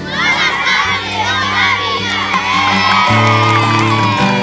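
A group of children shouting and cheering together, starting suddenly and fading toward the end, with one voice holding a long high shout, over background music.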